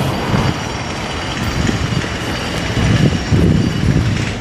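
Outdoor street noise: a steady, fairly loud rumble and hiss with low swells, with no clear single event.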